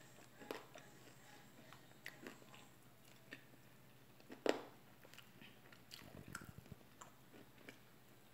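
Faint close-up eating sounds: chewing and wet mouth clicks while eating a fried chicken wing, with a sharper smack about four and a half seconds in and a flutter of small ticks a little later.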